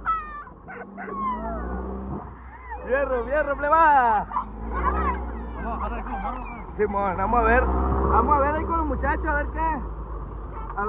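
Boys yelling, whooping and laughing excitedly while riding in an open dune buggy, with loud rising and falling cries about three to four seconds in and again near the end, over the buggy's steady low rumble as it drives.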